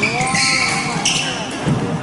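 Badminton shoes squeaking on a wooden court during a fast doubles rally. A drawn-out tone rises and then falls over about the first second.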